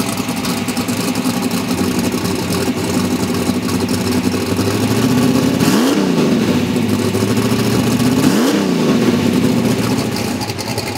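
Drag-race car engine idling at the starting line, blipped twice with quick revs that rise and fall back to idle in the second half.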